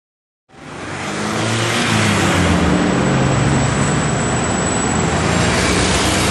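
Street traffic noise fading in from silence about half a second in: a steady, loud wash of road noise from passing cars, with a low hum underneath.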